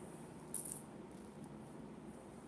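A brief high-pitched rattle, about a quarter second long, about half a second in, over faint room tone.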